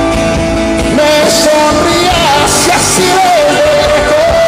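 Live pop ballad: a male singer's voice comes in about a second in, holding long notes over acoustic guitar and band.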